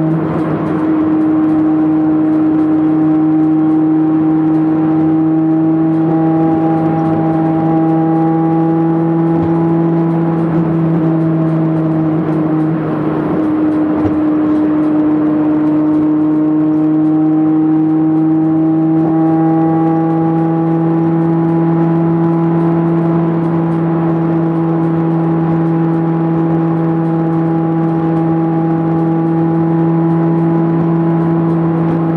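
Honda Civic's B18C4 four-cylinder VTEC engine droning at a steady motorway cruise, heard from inside the cabin, with road noise under it. The drone holds one steady pitch, dips briefly about 13 seconds in, then carries on at much the same pitch.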